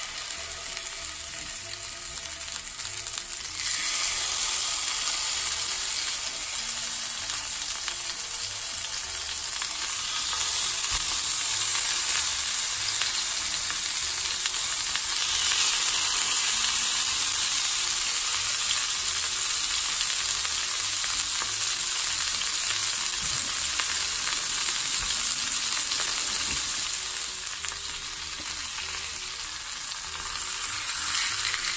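Pork chops sizzling in hot avocado oil in a cast iron skillet, seared fat side down to render the fat. The sizzle steps up about four seconds in and again around ten seconds in as more chops go into the pan, then holds steady.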